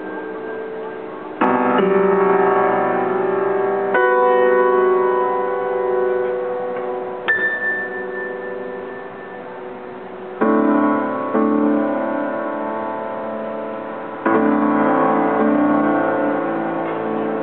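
Piano playing a slow contemporary piece: chords struck about every three to four seconds and left to ring out and fade, with a single high note sounding between them about halfway through.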